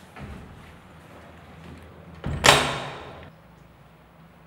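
A toilet-stall door shut with a loud bang about two and a half seconds in, the sound dying away over about a second; a softer knock comes just after the start.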